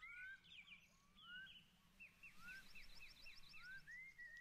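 Faint birdsong from a nature-sounds background. A rising whistle repeats about once a second, and a quick run of short chirps comes through in the middle.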